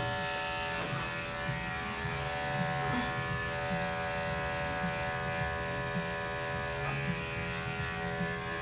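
Electric dog-grooming clippers running with a steady buzzing hum while trimming fur under a schnauzer's chest.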